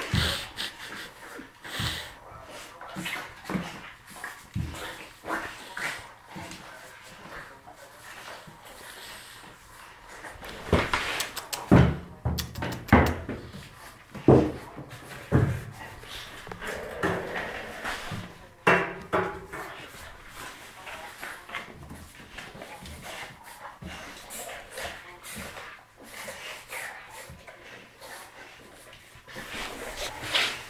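A Boerboel and a French bulldog play-fighting: irregular scuffling and dog vocal noises, with a run of louder, sharp knocks and bursts about eleven to fifteen seconds in.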